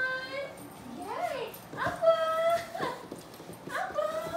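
Young dogs whining and yipping in play: about four drawn-out calls that bend up and down in pitch, the loudest held one about two seconds in.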